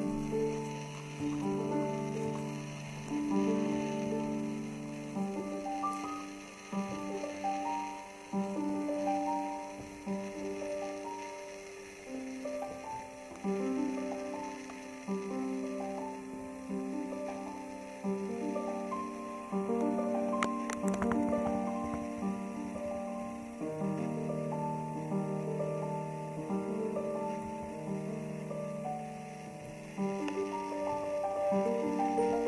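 Grand piano played solo: a slow melody of notes that strike and fade over lower chords, with deep bass notes at the start and again near the end.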